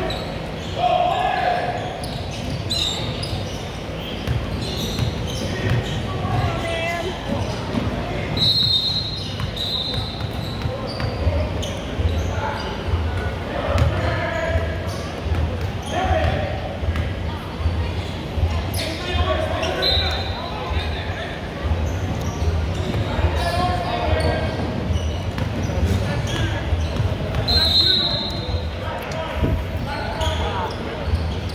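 Basketball game on a hardwood gym court: the ball bouncing as it is dribbled, in a steady run of about two bounces a second through the second half, under scattered shouts and chatter of players and spectators echoing in the large hall. A few short high squeaks cut through now and then.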